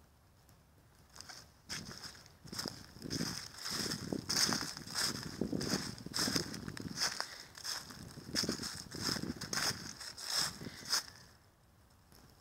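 Footsteps through a thick layer of dry fallen leaves, about two steps a second, starting a second or two in and stopping shortly before the end.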